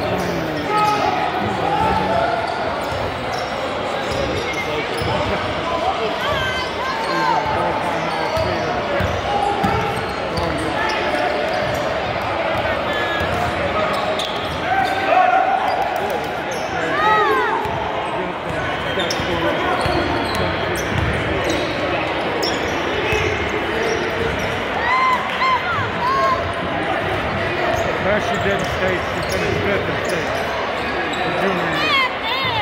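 Basketball dribbled on a hardwood gym floor during live play, with sneakers squeaking a few times on the court, over steady chatter from players and spectators in the hall.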